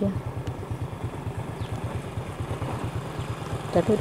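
A small engine running steadily at idle, with a rapid low chugging of about ten pulses a second.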